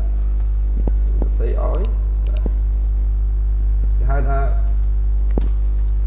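Loud, steady low electrical mains hum on the recording, with two brief snatches of a voice speaking and a few faint clicks.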